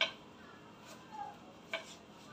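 Two sharp clicks about a second and three-quarters apart, over a faint steady hiss.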